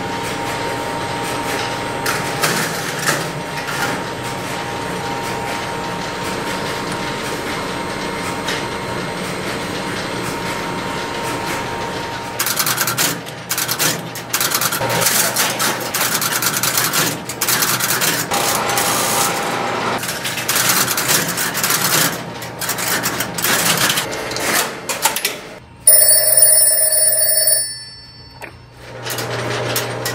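Electromechanical relays and crossbar switches of a No. 1 Crossbar office clicking and clattering in rapid irregular bursts as the repaired marker sets up a test call. About 26 seconds in, a telephone bell rings once for about a second and a half, the loudest sound, showing that the call has gone through.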